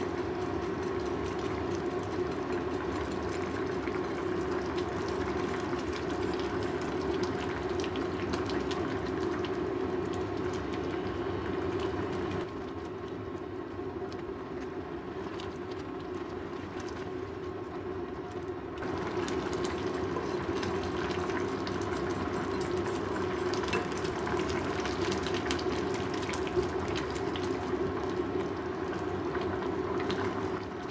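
Thick curry stew simmering and bubbling in a pan while a spatula stirs it, with small clicks and scrapes against the pan. It turns quieter and duller for several seconds in the middle.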